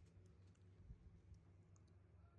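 Near silence: quiet room tone with a low hum and a few faint, scattered clicks.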